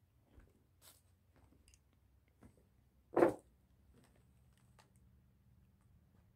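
Footsteps crunching over rubble and debris on a basement floor, as faint scattered clicks and crunches, with one loud short thump about three seconds in.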